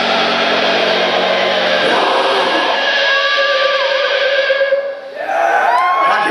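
Heavy metal band playing live. About two seconds in the bass and drums drop out, leaving a long held high note with a wobble in it. After a brief dip near the end, rising high-pitched notes come in.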